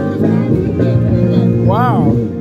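Live gospel band music: held low bass notes under a singing voice, which swells into a wavering phrase near the end.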